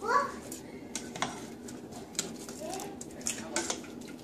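A spoon scooping boiled tomatillos from a metal pot into a glass blender jar: a scatter of sharp clicks and knocks as the utensil strikes the pot and the jar.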